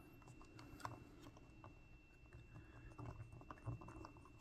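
Near silence with faint, scattered small clicks and ticks of a screwdriver turning small screws into a laptop's battery mount.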